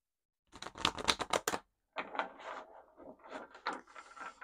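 A deck of oracle cards being shuffled by hand: a quick, dense run of card clicks and slaps starting about half a second in, then a looser stretch of shuffling with scattered clicks.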